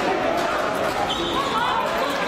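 Live game sound of indoor floorball in a sports hall: players' and spectators' voices calling out over footsteps and the knocks of sticks and the plastic ball on the court floor.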